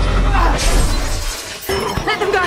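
Film sound effects of a creature fight: a deep rumbling crash with breaking and shattering noise in the first half, then a sharp knock near the end.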